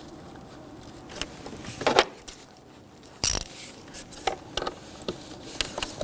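Scattered small clicks and scrapes of hands working bolts and tools on top of an engine, as the purge solenoid's mounting bolts are threaded down by hand. The loudest is a single knock a little past three seconds in.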